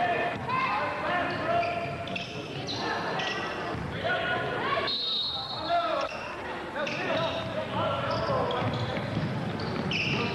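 A basketball being dribbled on a hardwood gym floor, mixed with shouts and chatter from players and spectators.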